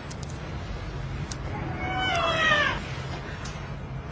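A cat meows once, a drawn-out call about two seconds in that falls in pitch at its end.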